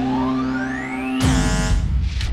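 Electronic intro music: a synth tone sweeps steadily upward over held chord tones, then about a second in it breaks off into a sudden loud hit with a falling pitch that quickly thins out.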